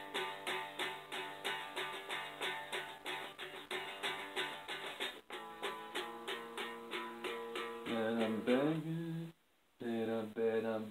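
Guitar played in steady picked notes, about four a second. Near the end there is a louder passage with sliding pitch, then the sound cuts out for half a second and resumes.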